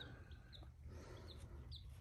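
Day-old chicks peeping faintly, a few short high peeps spread across the moment.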